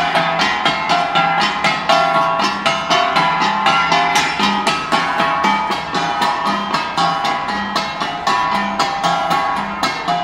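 Cordillera gangsa, flat bronze gongs, played together as an ensemble: several gongs of different pitch struck in a fast, steady rhythm, each stroke ringing briefly.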